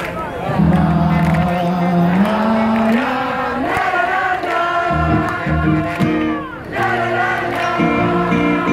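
A live rock band playing, with guitars and bass, and crowd voices joining in. There is a downward pitch slide about six and a half seconds in.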